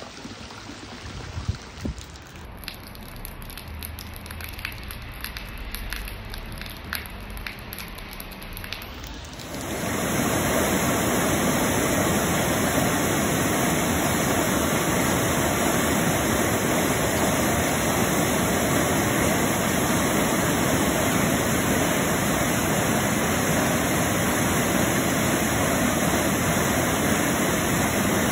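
Swollen, flooded river pouring over a weir: a loud, steady rush of water that starts abruptly about a third of the way in. Before it, a quieter stretch of faint patter with light scattered ticks.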